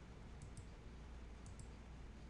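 Faint computer mouse clicks: two quick double clicks about a second apart, over a low steady hum.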